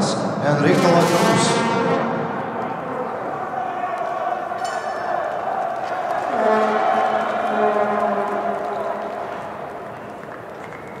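A public-address announcer's voice echoing through a large arena hall.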